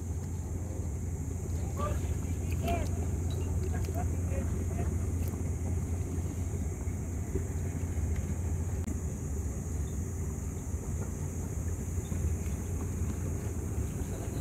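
Steady low rumble of outdoor background noise over open water, with faint voices in the distance.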